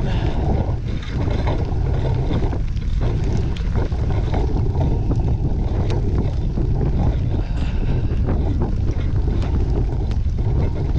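Steady wind rumble on the microphone of a moving bicycle, mixed with the tyre noise of riding over a wet, muddy dirt road and a few faint ticks.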